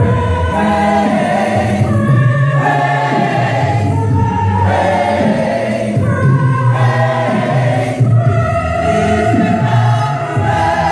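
Large gospel mass choir singing a cappella, many voices in full harmony with no instruments, in phrases that break every second or two.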